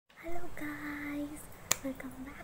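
A single sharp finger snap near the end, after a woman's brief wordless vocal sounds.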